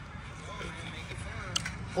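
Faint voices over a steady low outdoor background hum, with one short click about three-quarters of the way through.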